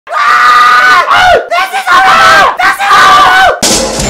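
A man screaming loudly in four long, drawn-out yells with short breaks between them. Music starts abruptly near the end.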